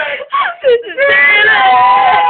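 A woman's voice: a few short broken vocal sounds, then about a second in a long, high note held steady.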